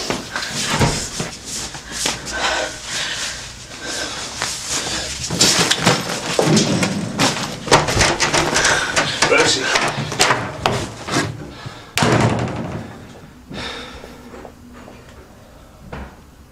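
A scuffle, with knocks, thuds and breathy vocal sounds, then a single loud slam, like a door, about twelve seconds in.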